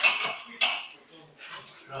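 Clatter of dishes and cutlery in a kitchen: a sharp clink at the start and another short clatter about half a second in, then fainter kitchen noise with a low murmur of voices.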